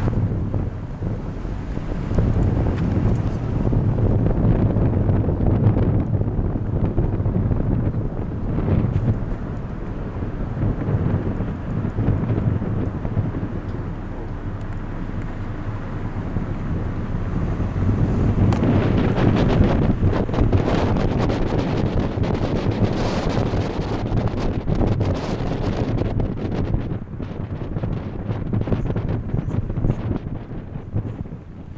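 Wind buffeting the camera microphone, a rumbling rush that rises and falls in gusts and is strongest a few seconds in and again from about eighteen seconds on.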